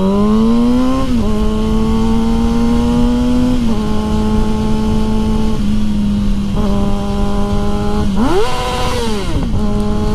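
Kawasaki ZX-6R 636 inline-four sport-bike engine under hard acceleration, its pitch climbing in the first second, then holding a steady high note with a dip at each upshift. About eight seconds in, it revs quickly up and back down. Wind noise on the helmet microphone runs underneath.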